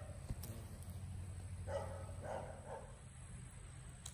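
Faint animal calls: three short calls close together about two seconds in, over a steady low hum.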